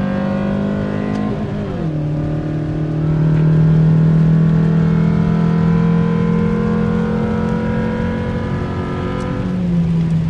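Renault Scenic's engine through a baffle-less UltraFlow muffler, heard inside the cabin while accelerating. The pitch drops at an upshift about a second and a half in, the revs then climb steadily for several seconds, and a second upshift drops the pitch again near the end.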